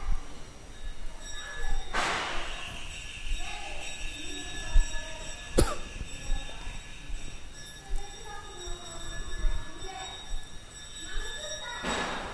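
Faint, indistinct voices of people some way off, echoing in a stone-pillared hall. There is a short rush of noise about two seconds in and a single sharp click about halfway through.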